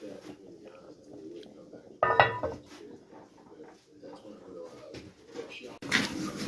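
Pot of meat at a rolling boil with metal cookware being handled. A short vocal sound comes about two seconds in, and there is a sharp knock just before the end.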